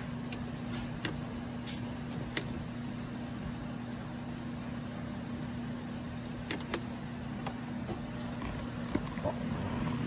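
A steady low hum over faint background noise, with a few light clicks and taps scattered through.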